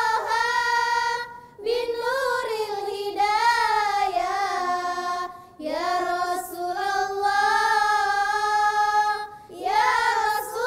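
A group of girls singing an Islamic nasheed in unison, in long held phrases with short pauses for breath about a second and a half, five and a half, and nine and a half seconds in.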